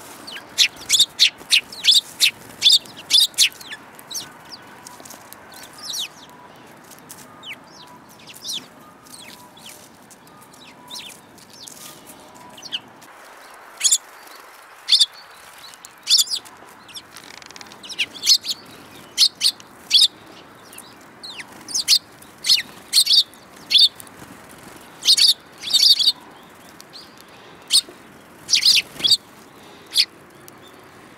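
Eurasian tree sparrows chirping: short, sharp chirps in quick clusters. They thin out for a while around the middle and pick up again.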